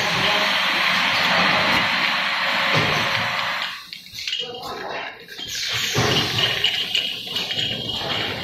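Bottling-line machinery running with a loud, steady rushing hiss that drops away at about four seconds, then returns more unevenly; voices and a short laugh near the end.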